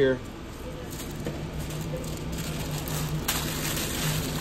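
Paper sandwich wrapper rustling and crinkling as it is folded by hand around a breakfast croissant sandwich, louder near the end, over a steady low hum.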